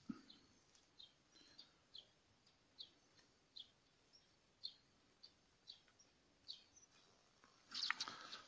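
Faint small-bird chirps, short high calls repeating about once a second, with a brief low knock at the start and a louder flurry of sound near the end.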